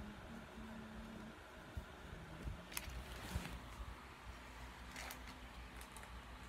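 Quiet handling noise of Pokémon trading cards: a few short clicks and rustles, about three seconds in and again near five seconds, over faint room tone.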